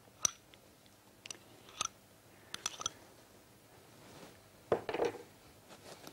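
Metal spoon and fork clinking and scraping against glass bowls as frozen yoghurt is scooped onto berries and stirred in: a few separate light clinks that ring briefly, then a busier stretch of stirring about five seconds in.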